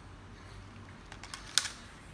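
A few light clicks, then one sharp plastic clack about one and a half seconds in: a Sky Viper 2450 drone's plastic frame and legs being set down on a hard stone floor.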